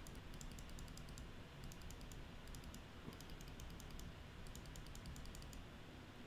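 Faint computer mouse clicking in quick runs of several clicks with short pauses between them, as a brush is stamped down click by click.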